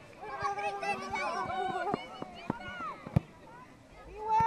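Several voices calling out at once, spectators and players on a football pitch, over the first two seconds, followed by a few short knocks and one sharp click a little after three seconds in.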